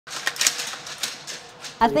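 Several sharp metallic clicks and clacks from the action of an M4-type carbine being handled. Speech starts near the end.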